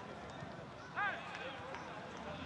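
Faint open-air ambience of a football pitch, with one short, distant shout from a player about a second in.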